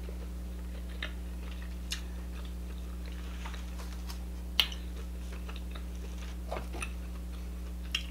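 Quiet eating sounds: a few scattered soft clicks and taps as king crab legs are handled and dipped in butter sauce, the sharpest about four and a half seconds in, over a steady low hum.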